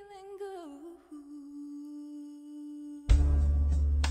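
Female singer's voice falls through a short phrase and holds one long, steady low note with no words. About three seconds in, the full band comes in loudly with heavy bass and drums.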